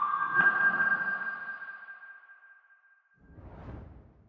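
Electronic outro jingle of a broadcaster's sound logo. A ringing chime-like tone is joined by a second, higher tone struck just under half a second in, and both fade away over about two and a half seconds. A soft whoosh follows near the end.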